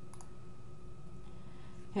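A single faint computer mouse click just after the start, over a steady low background hum with a faint constant whine.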